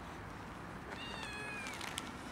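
A cat meowing once, a high-pitched call of under a second that falls slightly in pitch, starting about halfway through, followed by a short sharp click near the end.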